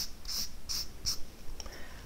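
Felt-tip marker squeaking on flipchart paper as four short lines are drawn in quick succession, one stroke about every third of a second.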